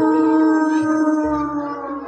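A female singer holding one long note in the music of a Javanese barongan performance. The note is steady in pitch and fades out toward the end.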